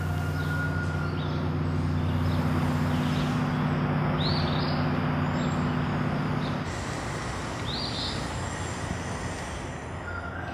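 Winter moth caterpillar droppings falling through the tree canopy and hitting the leaves, an even patter like very light rain. Under it a steady low engine hum stops about two-thirds of the way through, and a bird chirps twice.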